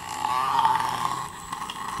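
Hexbug Nano V2 micro robot's vibration motor buzzing as it climbs up inside a clear plastic tube; the buzz drops in level about halfway through.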